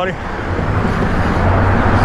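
Road traffic going by on a multi-lane road: a continuous rush of tyres and engines that grows a little louder toward the end.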